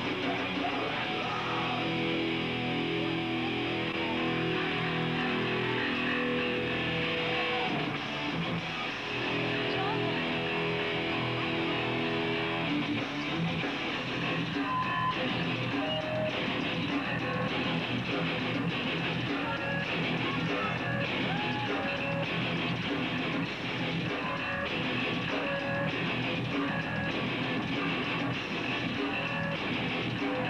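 Hardcore band playing live: distorted electric guitar, bass and drums. The riff changes about halfway through, from held chords to a choppier part.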